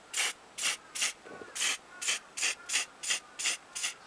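Spray paint from an aerosol can, released in short hissing bursts about two or three a second as white is sprayed onto a small plastic part.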